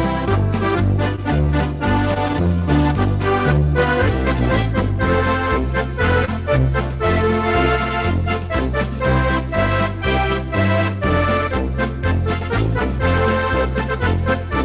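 A polka played on an electronic organ, with an accordion-like lead voice over alternating bass notes.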